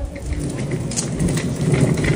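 Crackling, rumbling noise right on the microphone, starting suddenly and running on steadily, the kind made by wind or cloth rubbing over a phone's mic.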